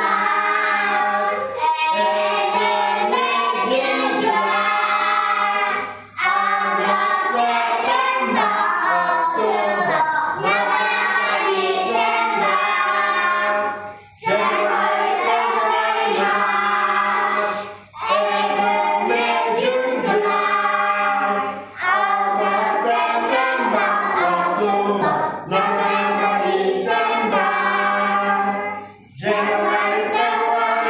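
A group of children singing an English action song together, phrase after phrase, with brief pauses between lines.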